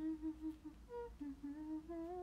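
A young woman humming a short tune softly through closed lips: a few held notes, with a brief higher note about a second in.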